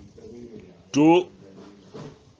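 Speech: a man's voice calls out one short, loud syllable about a second in, with faint voices murmuring behind.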